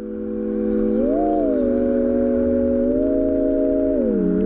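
Music intro: a held electronic keyboard chord swells in from silence, its pitch sliding up and back down, then stepping again a few times.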